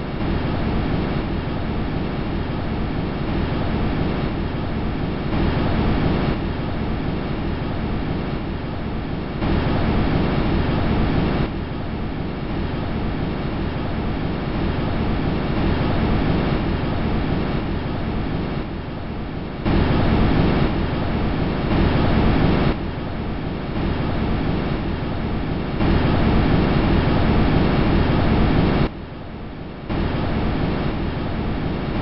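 Sound recording from the Huygens probe's descent through Titan's atmosphere: a steady rushing, rumbling noise. It comes in blocks a few seconds long, and its loudness steps up and down abruptly from one block to the next.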